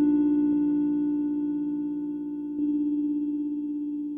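Ambient drone music from a hardware synthesizer setup: a sustained synth tone slowly fading, with a new note struck about two and a half seconds in.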